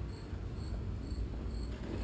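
Cricket chirping, a short high chirp repeating about twice a second, over the low steady rumble of a gas smoker's burner flame.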